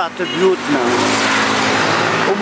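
Road traffic going by close on a city street: a steady rush of tyre and engine noise that swells in the first half second and then holds. A man's voice is heard briefly near the start.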